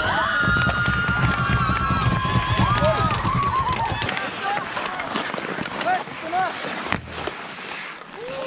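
Hockey players whooping and yelling wordlessly just after a goal: several long held shouts together in the first few seconds over a low rumble, then a few short calls. A single sharp knock comes about seven seconds in.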